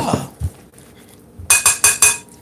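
A serving spoon knocking against a glass mixing bowl while a salad is tossed, with a quick run of ringing clinks near the end.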